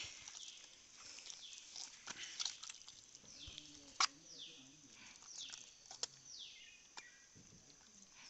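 Repeated high calls from an animal, each falling in pitch, coming every second or two, with two sharp clicks about four and six seconds in.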